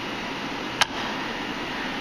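A single sharp metallic click about a second in as the Bridgeport mill's spring-loaded high-low speed range lever snaps up into gear, engaging the high range, over a steady background hiss of room air handling.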